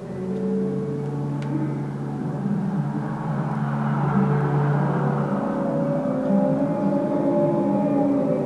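Ambient drone music: several steady low tones held and overlapping, changing pitch now and then, with a hissing swell through the middle as it grows slowly louder.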